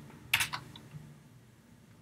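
Two or three quick computer keyboard keystrokes about a third of a second in, followed by a faint low hum.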